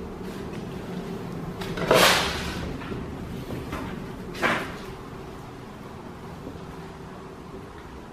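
Wooden door being moved, a loud scraping swish about two seconds in that fades over most of a second and a shorter one a little after four seconds, over a steady low hum.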